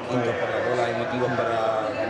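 Speech only: a man's voice talking, with the rise and fall of ordinary conversation.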